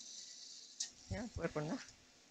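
A person's voice, brief and faint, about a second in, after a soft hiss and a single click.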